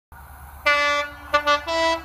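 Class 43 HST power car's horn sounding a series of blasts: one blast about two-thirds of a second in, two quick short ones, then a longer one on a higher note near the end.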